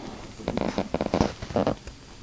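A textbook's paper pages being handled: a quick series of rustles and small knocks, starting about half a second in.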